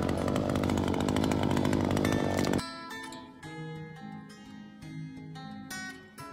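Gas string trimmer engine running steadily, cutting off abruptly about two and a half seconds in. Acoustic guitar background music follows.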